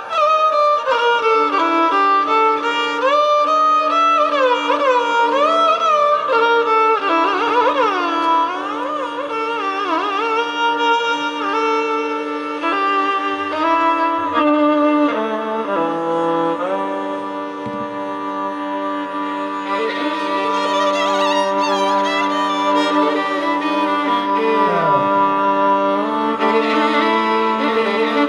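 Carnatic violin music from several violins played together: the melody slides and bends between notes with wavy ornaments, running quickly in the first half and settling into longer held notes later.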